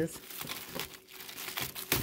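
Clear plastic bags of frozen chicken crinkling as a hand picks them up and shifts them in a cardboard box, with a sharper rustle near the end.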